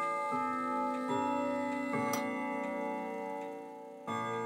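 Longcase clock chiming a slow melody: struck chime notes about one every 0.8 seconds, each ringing on into the next, fading away near the end.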